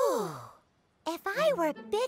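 A cartoon character's voice sighing, its pitch falling steeply as it fades out within about half a second; a character's speech starts about a second in.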